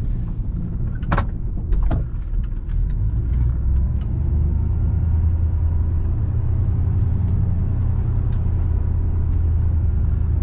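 A car's engine and road noise heard from inside the cabin: a low, steady rumble that grows stronger about halfway through. A couple of sharp clicks or knocks come in the first two seconds.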